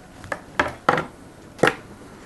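Four sharp clicks and knocks of small metal hand tools being handled and set down on a wooden table, the two loudest in the second half.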